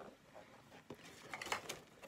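Faint handling sounds of a cardboard toy box being moved and set down, with a couple of light knocks.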